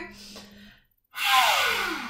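A woman's loud, deep breath through an open mouth, starting about a second in: breathy, with her voice sliding down in pitch like a sigh, a deliberate yoga breathing exercise. Just before it, the sound drops out to silence for a moment.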